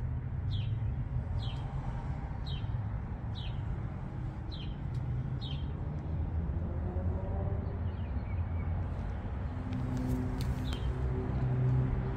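A small bird chirping: short, high, falling chirps about once a second, thinning out after the first half. Under it there is a steady low rumble.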